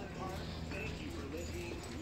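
Store interior ambience: a low steady hum under faint distant voices, with a few light knocks.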